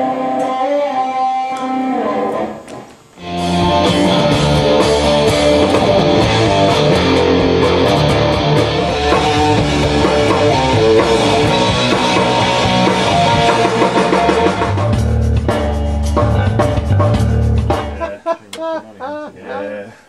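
Electric guitar playing with a band. After a short break about three seconds in, drums and bass come in together and the full band plays until about two seconds before the end, when it stops.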